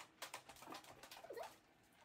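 Faint, short whines from a dog, two brief gliding cries, after a few light clicks and rustles in the first half second.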